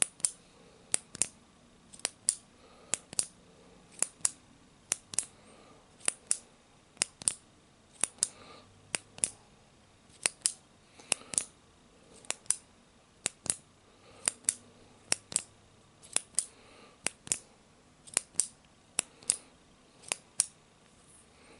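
Crisp clicks made by a hand working close to the microphone, in pairs a fraction of a second apart, repeating about once a second.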